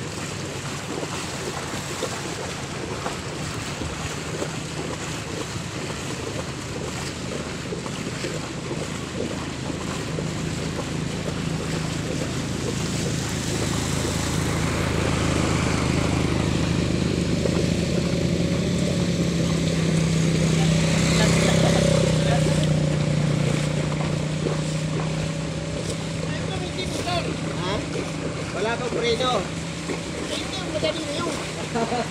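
A small engine running steadily over the wash of floodwater. The engine grows louder through the middle and then eases off, and voices come in near the end.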